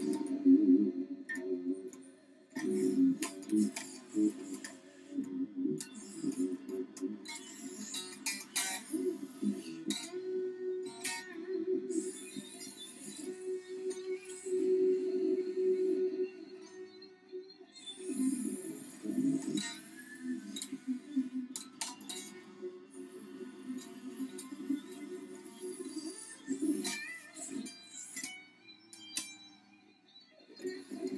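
Solid-body electric guitar played solo, working through a G7 chord idea that resolves on the open third string. Picked notes and chords ring and fade, with sharp pick clicks and string noise throughout.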